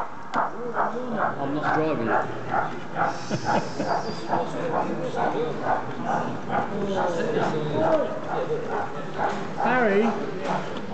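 People's voices chattering in a hall, over a steady pulse of short knocks repeating about three times a second.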